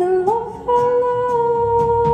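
Live indie band: a singer holds one long, steady sung note over guitar after a short rising phrase, and low bass notes come in near the end.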